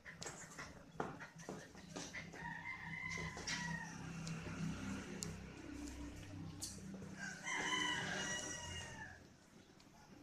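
Puppy playing with a toy on a tile floor: scattered clicks and taps as it chews and pushes the toy. Two long calls sound over it, each falling in pitch at the end, one about three seconds in and a louder, longer one near the end.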